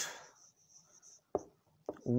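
Marker pen writing on a whiteboard: a faint thin high scratch of pen strokes in the first second, then two short taps.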